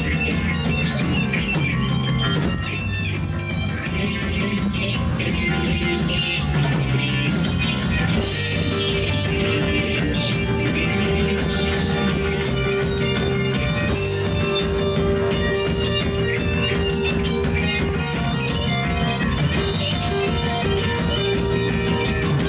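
Live rock band playing, with electric guitars, electric bass and a drum kit keeping a steady beat. A sustained note is held from about eight seconds in.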